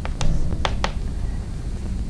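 Chalk writing on a blackboard: a few sharp taps and clicks as the chalk strikes the board, over a steady low room hum.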